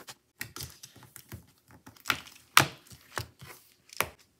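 Plastic shrink-wrap on a sticker book crinkling and tearing in a string of short, irregular crackles as it is slit with a small paw-shaped cutter and pulled off. The loudest crackles come a little past halfway.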